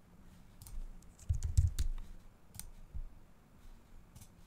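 Computer keyboard keystrokes and mouse clicks: a scatter of sharp clicks, with a few louder dull thumps about a second and a half in.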